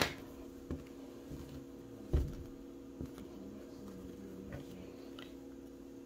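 Quiet handling sounds as a crocheted acrylic-yarn blanket is turned over and laid flat on a tabletop, with a few small clicks and one soft thump about two seconds in, over a steady low hum.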